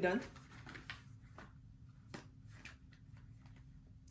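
Small cardboard Sonny Angel blind boxes being handled and shuffled in the hands: faint, scattered taps and rustles.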